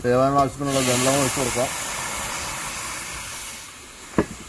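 Water poured from a steel vessel into a wide aluminium pot of chopped vegetables: a steady splashing hiss that fades out near the end. A person speaks briefly over the start.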